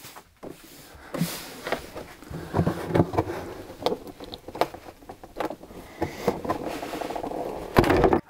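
Glued ABS plastic lid of a lithium battery case being pried and pulled off: irregular cracks, creaks and scraping as the glue seal gives way, with a loud crack near the end.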